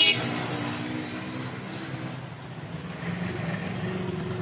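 Road traffic: a passing motor vehicle's engine droning, sinking slightly in pitch as it fades over the first half, then another engine coming up from about three seconds in.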